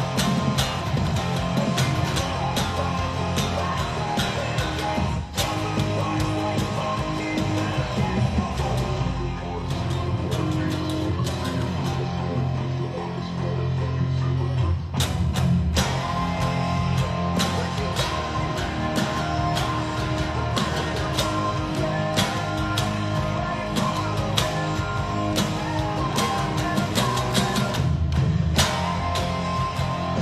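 Electric guitar strummed in rock chords, with a full rock band with drums and bass behind it, as when playing along to a recorded song. The music breaks briefly about five seconds in and again near the middle.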